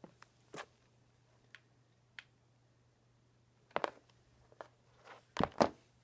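Sparse small clicks and taps of hands handling a hair clip, ribbon bow and glue while pressing the bow in place, with two short clusters of louder knocks, the first a little before the midpoint and the second near the end.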